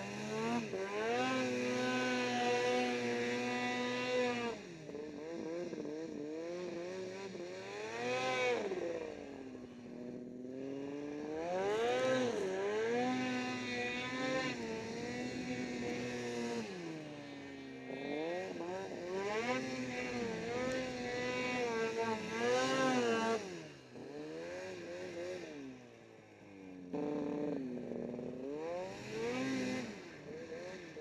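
Snowmobile engine under throttle, revving up and holding high for a few seconds, then falling back, several times over as the rider eases off and gets back on the gas.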